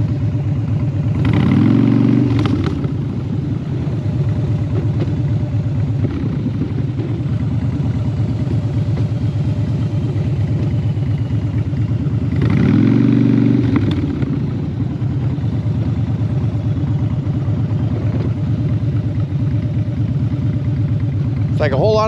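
Motorcycle engine running steadily as the bike rides along, heard from the rider's position, with two brief louder surges, one about a second in and one about halfway through.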